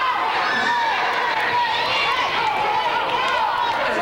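Overlapping voices of spectators and players calling out during a youth basketball game in a gym, with no clear words.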